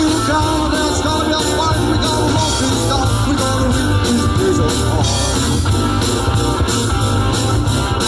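Live rock and roll band playing at full volume: electric and acoustic guitars, bass guitar and a drum kit keeping a steady beat, with a singer's voice over the top.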